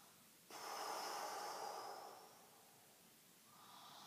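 A woman breathing deeply and audibly while holding a stretch: one long breath begins suddenly about half a second in and fades over nearly two seconds, then a softer breath starts near the end.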